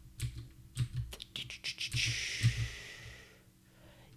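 Typing on a computer keyboard: a quick run of key clicks over the first two seconds, then a soft hiss that fades out over about a second and a half.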